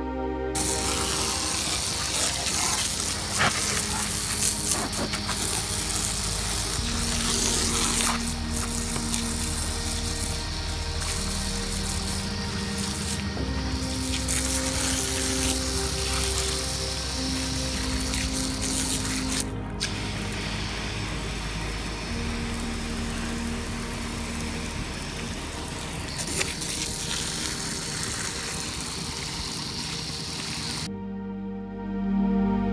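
A jet of water from a hose spray nozzle hissing as it rinses down a sailboat's deck, a steady spray noise, with calm ambient music playing over it.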